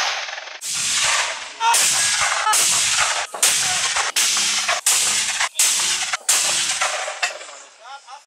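Mortar firing: a rapid series of about nine sharp blasts, each under a second after the last and each trailing off in a short ringing echo.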